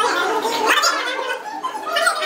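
Indistinct voices of people talking at close range.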